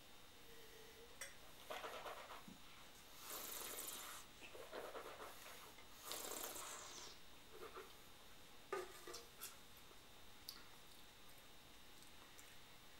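Faint sipping and breathing as a person tastes red wine, in several soft breathy puffs over the first half. Then light handling noise with a few small clicks and knocks, the sharpest about nine seconds in, as a metal tin is lifted off a table and moved.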